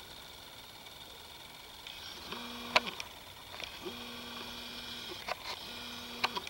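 A small motor whining at a steady pitch in three short spells in the second half, starting and stopping with a brief ramp each time, with a few sharp clicks among them: the camcorder's zoom motor.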